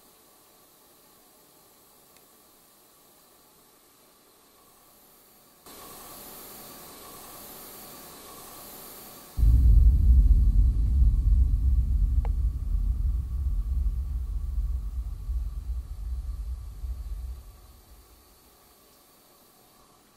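A faint hiss for a few seconds, then a sudden loud, low rumble that wavers and fades away over about eight seconds, with a single faint click in the middle.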